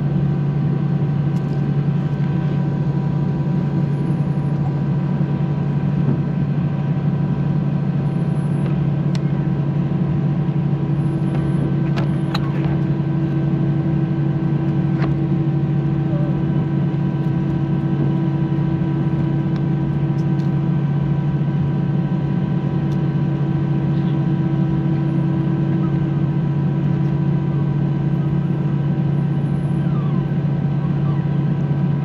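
Airbus A319 cabin noise while taxiing: a steady, loud drone of the jet engines, with a low hum and several fixed higher whines over it. A few faint clicks come about twelve seconds in.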